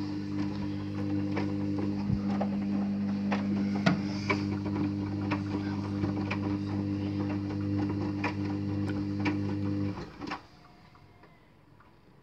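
Hoover HJA8513 front-loading washing machine running a cotton wash: a steady motor hum with light clicks and splashing from the wet load in the drum. The hum cuts off suddenly about ten seconds in as the motor stops, a pause between tumbles of the wash.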